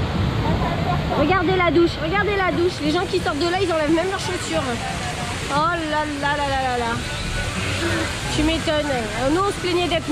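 Rushing white water of a river-rapids raft ride flowing down its channel, with people's voices over it.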